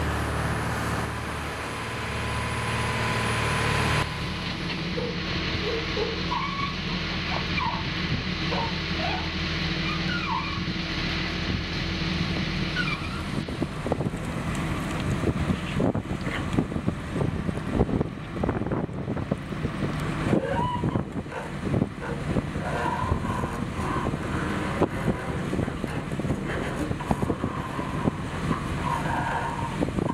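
A fishing boat's engine running under way, with wind and water noise. From about a third of the way in, frequent knocks and clatter of lines and gear being handled on deck join it as the trap net is lifted.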